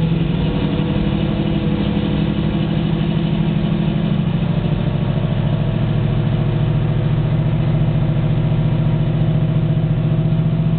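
Ford 351 Cleveland V8 of a 1971 Mustang Mach 1 idling steadily while it warms up after a cold start, heard from inside the cabin at the driver's seat. Its tone shifts slightly about four seconds in.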